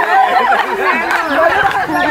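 Several women's voices talking and calling out over one another in lively group chatter.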